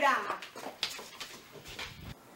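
A woman's call trails off falling in pitch, followed by a few soft knocks or steps in a quiet room.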